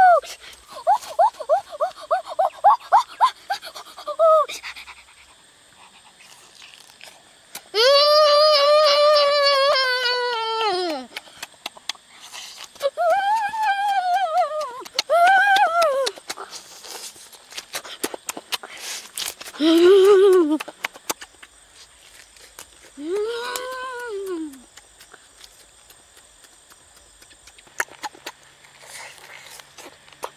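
A boy's wordless vocal sounds while eating grilled chicken: a quick run of short voiced bursts at first, then several drawn-out rising-and-falling "mmm"/"ohh" sounds of relish, the longest about eight seconds in. Faint clicks of chewing and lip-smacking come between them.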